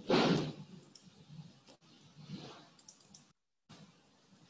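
Computer mouse clicks, a few faint single clicks and a quick pair near the end, as folders are opened. A short, louder rush of noise at the very start and a softer one later, with the sound cutting out completely for a moment a bit past three seconds in.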